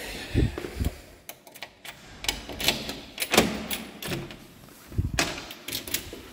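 An apartment entrance door being unlocked and opened: a series of sharp clicks and clunks from the lock and door.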